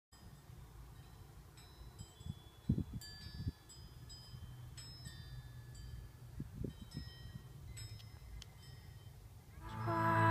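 Faint wind chimes tinkling now and then over a low outdoor rumble, with a few soft low thumps. Music fades in near the end.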